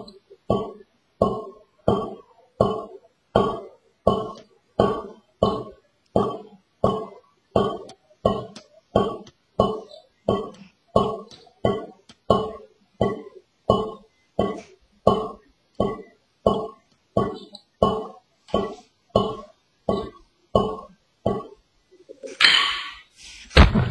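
Wooden drumsticks playing steady, evenly spaced free strokes from a low stick height on a snare drum and a practice pad, about three strokes every two seconds. Each stroke rings briefly before the next.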